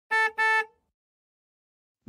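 A horn sounding two short honks in quick succession, then cutting off.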